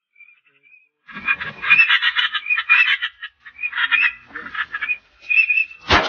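Ducks calling: a fast, raspy quacking chatter that starts about a second in and runs in bursts to near the end.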